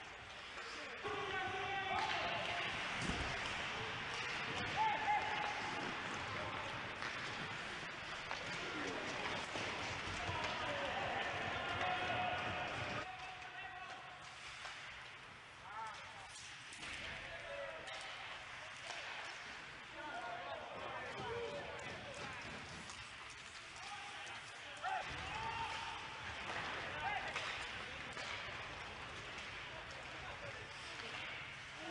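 Ice hockey game sound: sharp clacks of sticks and puck, with voices talking over the play.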